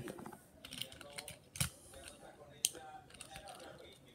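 A few light, scattered clicks and taps of small die-cast toy cars being handled, the sharpest about one and a half and two and a half seconds in.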